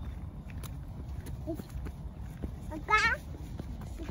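A toddler's short, high-pitched squeal about three seconds in, wavering in pitch, over scattered footsteps on pavement.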